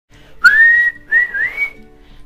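A person whistling two notes. The first slides up and is held for about half a second; the second, shorter one dips and then rises.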